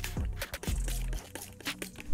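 Quiet background music with a steady beat and bass.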